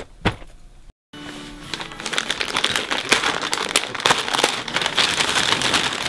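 Wrapping paper crinkling and tearing as a present is unwrapped by hand: a dense, continuous run of rustles and rips that starts about a second in and grows louder. Music plays underneath.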